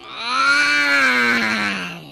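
A cartoon child's voice letting out one long, deep groan that rises slightly in pitch and then sinks and fades near the end.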